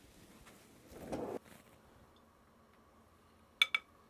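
Two quick clinks of a metal ice cream scoop against a glass bowl of frozen maple mousse near the end, after a brief muffled rubbing or sliding sound about a second in.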